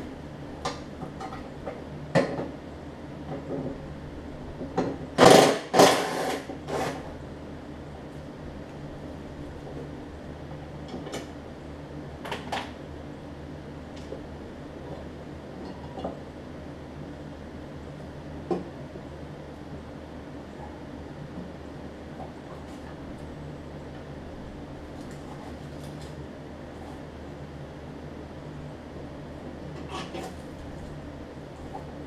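Metal clanks and rattles from hand work on a steel riding-mower deck's spindle and blade-brake hardware. They are loudest in a cluster about five to seven seconds in, followed by scattered single clicks, over a steady low hum.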